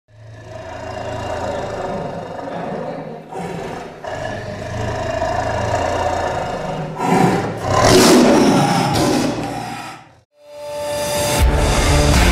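Intro sound effects under an animated logo: a low held rumble that swells into a loud rush about seven seconds in and dies away after ten seconds. Rock music with heavy bass then starts near the end.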